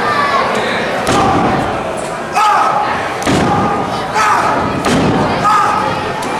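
Sharp slaps and thuds of blows landing in a wrestling ring, about one a second, each followed by a loud shout, in a large echoing gym.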